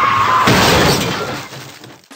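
Cartoon crash sound effect of hitting a tree: a man's yell breaks off into a smash with shattering glass, which fades out over about a second.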